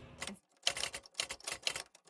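Typewriter sound effect: keys clacking in a quick, uneven run, starting about half a second in.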